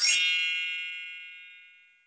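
A bright chime sound effect, struck once with many high ringing tones, fading away over about two seconds. It is a logo-intro sting.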